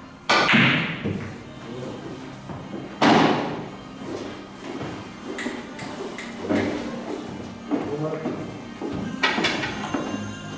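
A carom billiards shot: a loud, sharp clack about a third of a second in and another about three seconds in, followed by several softer clicks and knocks of the balls, with music playing in the background.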